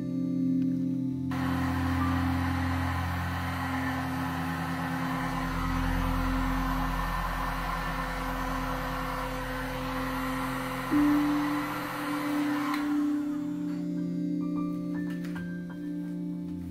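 A handheld heat gun blowing over a wet resin pour: its fan and airflow make a steady hiss that switches on about a second in and cuts off suddenly near the end. Soft ambient background music with mallet-like tones plays throughout.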